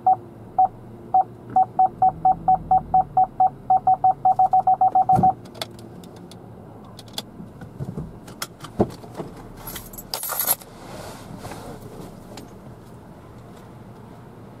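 Car parking-sensor warning beeping, one tone repeating faster and faster as the car reverses closer to an obstacle, stopping about five seconds in. After it come a few scattered clicks and a short hiss around ten seconds in.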